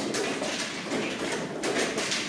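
Irregular sharp clicks and taps, several a second, of draughts pieces set down on a board and chess-clock buttons pressed in blitz play, over steady room noise.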